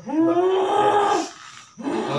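A woman's long, loud wordless cry, held for over a second and falling slightly in pitch. It comes from a woman in a possession trance.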